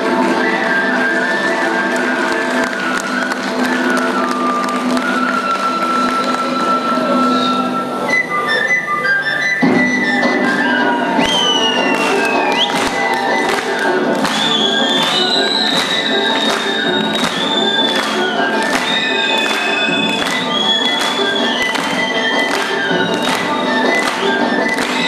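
Albanian folk dance music: a sustained melody line first, then from about ten seconds in a large frame drum (lodra) takes up a steady beat of about two strokes a second under a high, bending melody.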